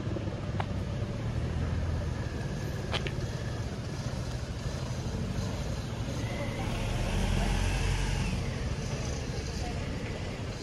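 A car passes on the street, swelling and fading in the second half, over a steady outdoor background hum.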